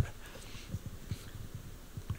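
Faint room noise in a pause between speakers, with a few small, soft low knocks and a faint breathy hiss.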